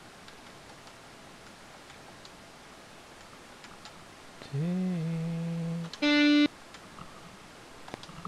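Computer mouse and keyboard clicking lightly, then two guitar notes played back by Guitar Pro notation software as notes are entered. About halfway through, a low note bends up in pitch and holds for over a second. Right after it comes a louder, higher and brighter note about half a second long, cut off sharply.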